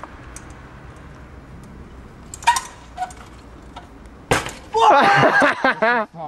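A trials bike landing hard on tarmac after a drop from a high wall: one sharp crack a little past four seconds in, with a lighter click about two seconds before it. A shout and laughter follow the landing.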